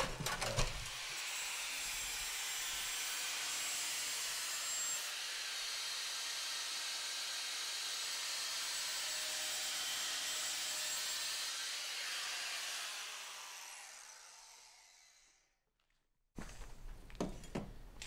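Handheld angle grinder with a polishing pad running against the mitered edge of porcelain tile, a steady hiss of grinding. It fades away over the last few seconds.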